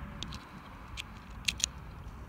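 A key pushed into a VW T4 door-lock cylinder, giving small metallic clicks as the blade passes the lock's wafers: a few light ticks, then two sharper clicks about a second and a half in.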